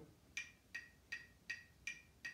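Metronome clicking at quarter note equals 160 beats per minute, five short, high, evenly spaced ticks about two and a half a second.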